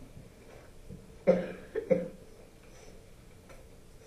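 A person coughing: one loud cough about a second in, followed quickly by two shorter coughs.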